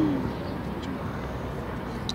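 Steady outdoor background noise from a football pitch, with faint distant voices. A low, falling call fades out right at the start.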